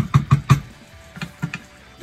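A spoon knocking and clinking against a saucepan while stirring diced apples and pears in a cream sauce. There is a quick run of four or five knocks at the start, then three more about a second later.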